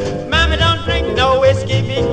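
Instrumental break in a 1950s Bahamian goombay/calypso band recording: a steady, pulsing bass and rhythm under a lead melody whose notes slide upward in short phrases.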